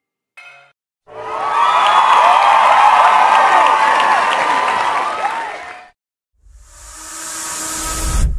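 Audience cheering and whooping with applause for about five seconds, which stops abruptly. Near the end a rising whoosh of hissy noise builds.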